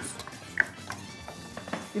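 Faint scraping and clicks of diced carrots being pushed off a cutting board into a steel pot and stirred with a wooden spoon, with a short high squeak just over half a second in.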